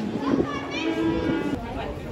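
Voices, including a high voice rising in pitch a little under a second in, over held notes of live music. About one and a half seconds in the sound changes abruptly to crowd chatter.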